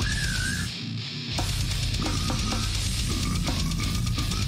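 Slam death metal recording playing: after a brief break, the slam section comes in about a second and a half in, with distorted guitars and drums. The guitar tone is one the listener believes comes from a Metal Zone distortion pedal.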